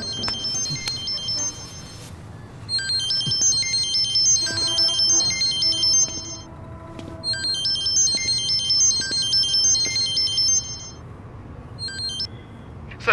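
Mobile phone playing a melodic ringtone: a quick run of high-pitched notes, a brief pause, then the phrase again.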